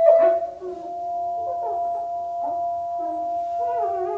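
A shakuhachi holds one long steady note while short, gliding, howl-like Weddell seal calls come and go beneath it. An acoustic guitar is struck once right at the start.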